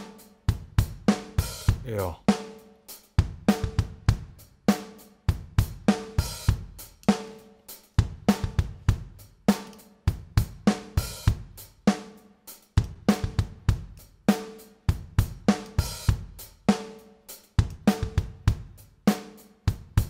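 A recorded drum kit, with kick, snare, hi-hat and cymbals, playing back a steady beat of sharp hits, run through a Softube Tube Leveling Amplifier TLA-100A plugin that is being set up for parallel compression, blending the clean drum signal with the compressed one.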